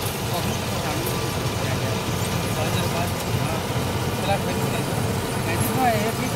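A combine harvester's diesel engine and threshing machinery running steadily while it cuts a dry standing crop, a continuous low rumble with a steady hum above it.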